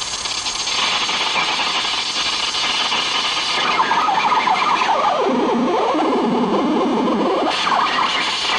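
Homemade electronic sound circuit putting out harsh, noisy, siren-like warbling through a small speaker. The wavering tone dips low about five seconds in and climbs back up near the end.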